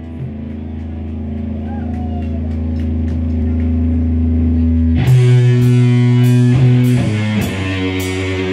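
Live punk rock band on electric guitar and drum kit: a held, droning guitar chord swells in volume, then about five seconds in the drums and guitar come in together and the song starts, cymbals hit about twice a second.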